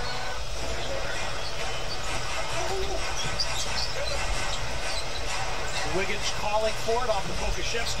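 Basketball game broadcast audio: steady arena crowd noise with a basketball bouncing on the court and a commentator's voice faint underneath.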